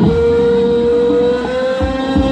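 Thai traditional folk dance music played over a horn loudspeaker: one long held note that steps slightly higher about one and a half seconds in, over lower sustained tones.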